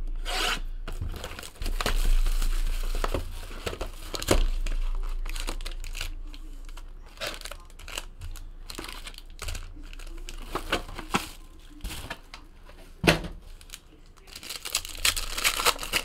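Trading-card hobby box being opened and its packs handled: irregular knocks and rustles of cardboard and wrappers, with a few sharper knocks. Near the end, a card pack's foil wrapper crinkles as it is torn open.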